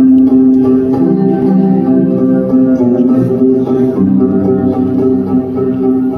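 Oud being played, a melody of plucked notes.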